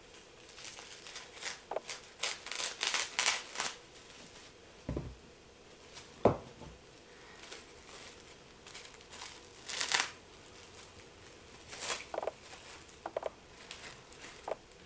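Plastic wrap rustling in short, irregular bursts as it is cut, handled and stretched over a plastic seedling container, with two soft thumps about five and six seconds in.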